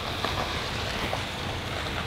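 Steady outdoor background noise with wind on the microphone and a few faint ticks.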